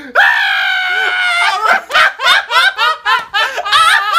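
A man bursting out laughing: a long, high-pitched shriek for about a second and a half, then rapid breathy laughs, about three a second.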